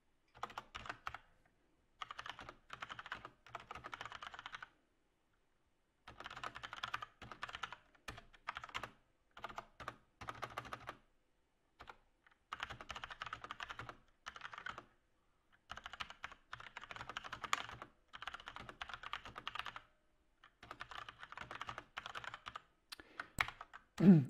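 Typing on a computer keyboard: runs of quick keystrokes lasting a few seconds each, broken by short pauses.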